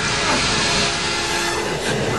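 Film sound effects of an airliner cabin in flight distress: a loud, dense rushing noise over a heavy low rumble, with no break.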